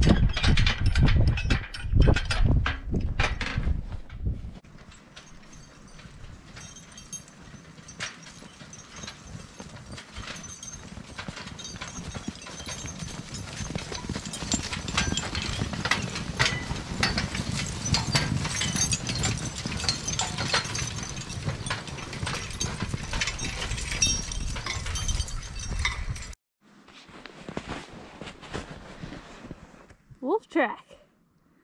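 A draft horse team pulling a wheeled steel forecart along a snowy trail: trace chains and harness clinking and rattling with hoof falls, growing louder midway. Heavy thumps and rumble in the first few seconds, then the sound cuts off suddenly near the end.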